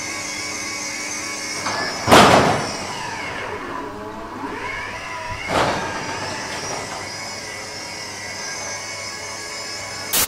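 Electric garage door opener running, its chain drive rattling along the ceiling rail as it moves a tilt-up garage door. There are two loud thumps, one about two seconds in and one about five and a half seconds in.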